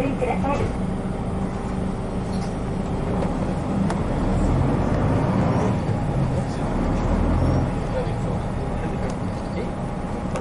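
1996 Hino Blue Ribbon KC-RU1JJCA route bus running, heard from inside the cabin. The diesel engine pulls harder and louder from about four seconds in, then eases off again near eight seconds.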